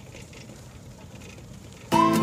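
Faint, steady outdoor background noise with no distinct events, then background music starts suddenly near the end.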